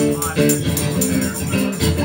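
Live acoustic band music: an acoustic guitar strummed in a steady rhythm, with a hand shaker keeping time over it.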